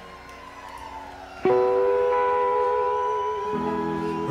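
Live rock band in a short instrumental gap between sung lines. Fading notes give way, about a second and a half in, to a guitar chord plucked sharply and left to ring with a slight waver. Lower bass notes join near the end.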